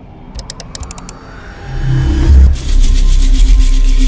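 Logo-intro sting: a quick run of sharp clicks as the bricks stack, then a rising swell into a loud, deep, bass-heavy music hit about two seconds in that holds.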